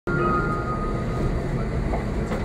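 Gornergratbahn electric rack railway train (Abt rack system) running with a steady low rumble; a thin high tone fades out about a second in.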